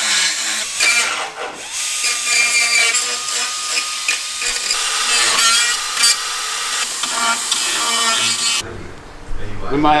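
Hand-held power drill running at varying speed while working in the front guard area of a Nissan Navara, with a steady whine for a couple of seconds in the middle. It cuts off sharply near the end.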